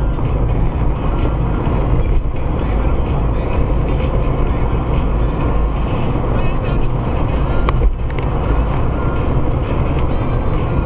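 Steady engine and tyre rumble of a moving car, heard from inside the cabin through a dashcam microphone.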